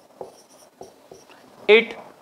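Marker pen writing on a whiteboard: several short, faint strokes over the first second and a half, ending as the writing stops.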